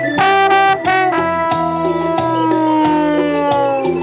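Trombone soloing over a cumbia band's bass and rhythm section. It plays a couple of short notes, then a long held note that slides slowly down in pitch.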